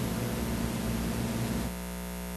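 Steady electrical mains hum and buzz with hiss on the audio line. About two-thirds of the way through, the hiss drops away and a cleaner, steady buzz is left.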